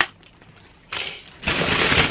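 Plastic bag rustling and crinkling as it is handled and filled, a short burst about a second in, then louder near the end.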